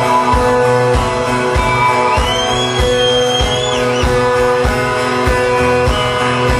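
Live rock band playing with electric guitars over a steady beat of about two drum hits a second. About two seconds in, a high note glides up, holds, and falls away near the four-second mark.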